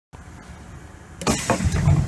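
Low hum inside a Class 321 electric multiple unit. About a second in it is joined by a loud run of clunks and rattles.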